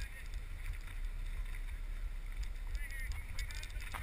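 Steady low rumble of wind buffeting the camera's microphone over the sound of a fishing boat under way.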